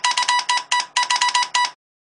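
A rapid electronic beeping tone, a bright buzzy pitch pulsed about eight times a second, stopping abruptly near the end.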